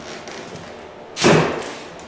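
A single heavy thump about a second in, dying away over about half a second.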